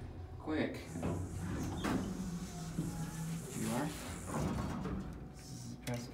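Otis elevator car doors sliding open on arrival, under background music and indistinct voices.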